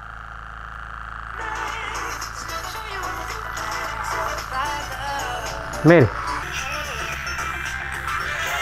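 Portable pocket radio with its batteries removed, running on electricity from a Stirling-engine generator that is rectified by a diode and filtered by two capacitors, comes on about a second and a half in: first a faint hiss, then a broadcast of music and a voice.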